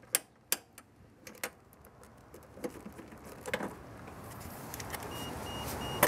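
A socket ratchet clicking a few times as it loosens the battery hold-down clamp bolt at the base of a car battery, then a rushing noise that grows steadily louder.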